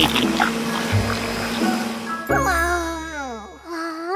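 Cartoon sound effects over music: a short laugh over a hissing whoosh with a deep hum, then a pitched tone that slides steadily downward for over a second.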